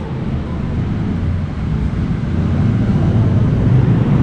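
A steady low rumbling noise, growing a little louder toward the end.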